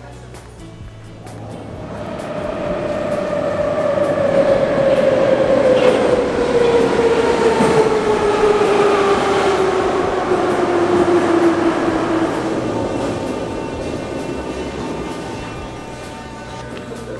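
Moscow Metro train pulling into the platform and braking. The rumble of the cars builds from about two seconds in, and a whine from the motors falls steadily in pitch as the train slows. Both fade away as it comes to a stop.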